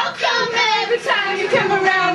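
Girls' voices singing loudly without a break.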